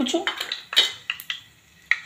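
Metal kitchen utensils clinking: a few sharp, separate clinks, the loudest a little under a second in.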